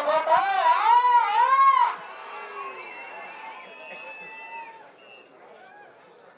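A man's loud, long, wavering shout that rises and falls in pitch and cuts off about two seconds in, followed by quieter drawn-out calls and crowd noise that fade away.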